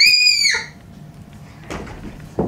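A child's short, piercing shriek, held about half a second and then cut off, followed near the end by a brief scuffing sound.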